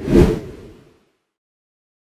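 A single whoosh sound effect for an animated logo reveal, swelling quickly and dying away within about a second.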